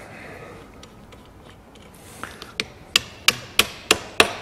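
Small hammer tapping the rear steel bolt back through a Bradley trailer coupling head and draw tube. About six light, sharp metal knocks come in the second half, roughly three a second.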